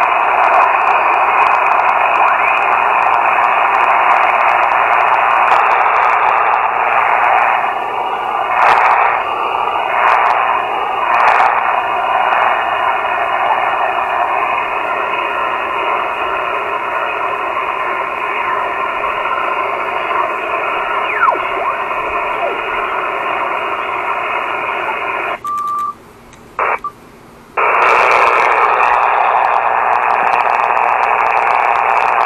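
Elecraft KX2 HF transceiver's speaker giving steady receiver static and hiss, narrowed by the sideband filter, as it is tuned across the 40-metre phone band, with few readable signals. About 25 seconds in the audio drops out for about two seconds with a short beep as the band is changed, then the hiss returns.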